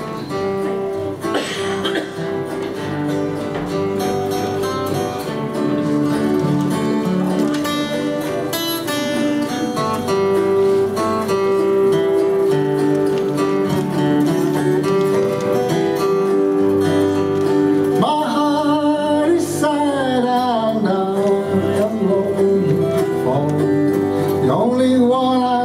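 Autoharp and lap-style slide guitar played with a steel bar, playing a country-folk tune with steady plucked chords and held melody notes. From about eighteen seconds in, the notes glide and waver in pitch.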